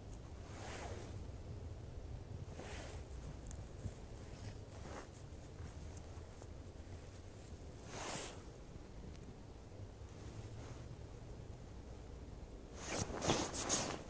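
Knit-gloved hands handling and bundling small firecrackers: a few faint, short rustles and scrapes, then a louder cluster of rustling near the end.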